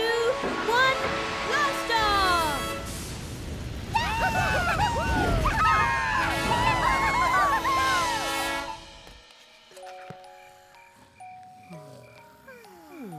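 Cartoon soundtrack of a rocket launch: music over a low rumble and many high voices cheering and whooping, loudest midway. Everything but the music cuts off about nine seconds in, leaving soft, sparse notes.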